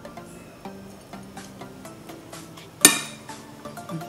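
Soft background music, with one sharp clink about three-quarters of the way through: a metal serving spoon knocking against a glass bowl while bhel puri mixture is spooned in.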